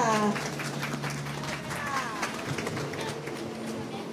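Scattered clapping from a small audience, thinning out after about two seconds, as someone is welcomed up to a stage.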